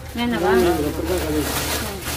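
A person talking in a fairly high voice, in short rising and falling phrases.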